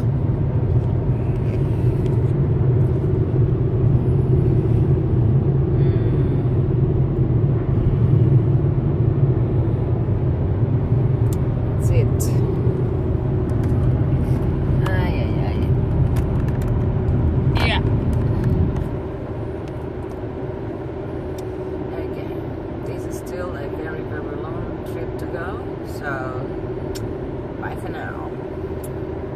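Road and engine noise inside a car cabin at highway speed: a steady low rumble. About 19 seconds in it drops noticeably quieter and stays there.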